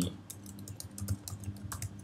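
Computer keyboard being typed on: a quick run of keystrokes, several a second, as a short command is entered.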